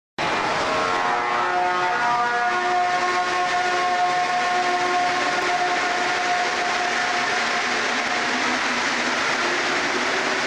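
Train sound: a steady rushing noise with several held whistle-like tones over it, which fade away after about eight seconds. The sound cuts off abruptly at the end.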